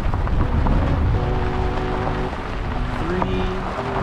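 Wind buffeting the microphone, a heavy low rumble.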